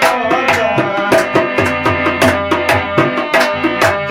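Tabla playing a steady, quick repeating rhythm over sustained harmonium notes: live Afghan music.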